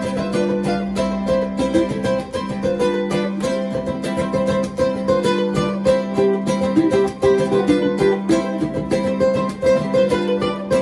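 Three ukuleles playing an instrumental piece together: rapid, even strummed chords with a melody line moving over them.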